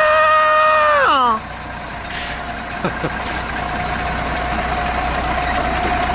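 A man's voice holds one drawn-out note that slides down and stops about a second in. Then a concrete mixer truck runs steadily, a low diesel rumble with a steady whine over it.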